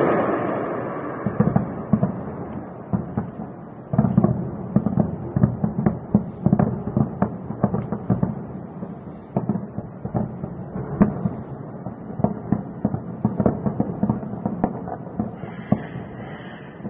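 Air-defense fire over a city at night: an irregular run of sharp cracks and booms, at times several a second. In the first few seconds a booming intro sound effect dies away under it.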